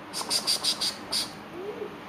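A cricket chirping: a quick run of about six short, high-pitched chirps.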